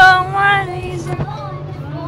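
A high voice singing a long held note, which breaks off under a second in, over the steady low drone of a bus engine.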